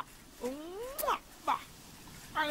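A meow-like cry rising in pitch over about half a second, ending in a sharp click, then two short cries falling in pitch.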